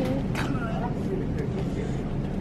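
Steady low hum of shop background noise, with a brief faint voice about half a second in.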